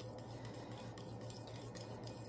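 Faint, scattered light clicks of a metal utensil against a ceramic bowl as sauce is stirred, over a low steady hum.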